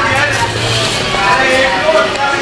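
Voices talking in the background with no clear words, plus a low steady hum during the first second.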